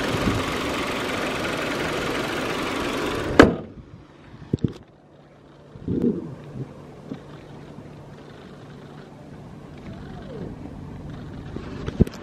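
Kia Sorento's four-cylinder petrol engine running with the bonnet open, a loud steady sound, cut short by the bonnet being slammed shut a little over three seconds in. After that the engine idles as a quiet steady hum, with a few light knocks and a click near the end.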